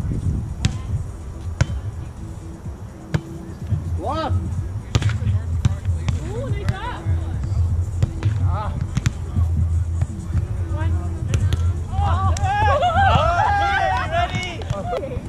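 Volleyball rally: sharp slaps of hands and forearms striking the ball every second or two, with short shouted calls from players and several voices overlapping near the end, over a steady low rumble.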